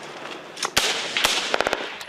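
Small-arms gunfire in combat: a sharp shot about three-quarters of a second in, another at about a second and a quarter, then a quick burst of several shots near the end, over a steady hiss of background noise.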